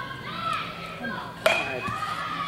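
Voices chatting, with one sharp knock about one and a half seconds in as the batter swings at a pitch.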